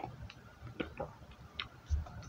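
About half a dozen faint, irregular clicks: the small mouth and lip sounds of sipping and swallowing coffee from a mug.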